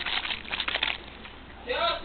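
Small plastic baby bottle of water and formula powder shaken hard, giving a quick rhythmic rattle of strokes that stops about a second in. A woman's voice starts near the end.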